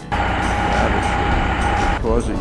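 A vehicle's steady running rumble with a steady high whine, cutting in abruptly just after the start.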